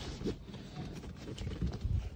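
Handling noise from a handheld camera being moved about: an irregular low rumble with scattered soft knocks, and a sharper thump near the end.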